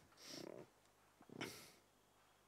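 A man's faint breathing in a near-silent room: two short breaths, the second, about one and a half seconds in, a little louder and sharper, like a sniff.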